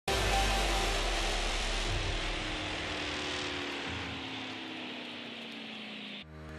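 TV channel logo sting: a sudden swell of whooshing noise over a low rumble, with faint tones gliding slowly downward as it fades away.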